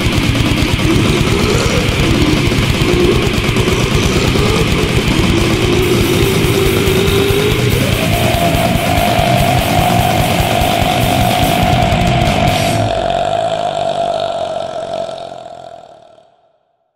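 Brutal death metal: fast drums with heavily distorted guitars and bass, the band stopping about thirteen seconds in while one held high note rings on and fades out near the end.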